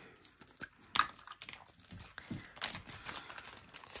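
Resin diamond-painting drills tipped from a plastic funnel tray into a small plastic container: light scattered clicks and plastic rustling, with one sharper click about a second in.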